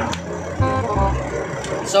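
Heavy truck's engine running, heard from inside the cab, with music playing over it.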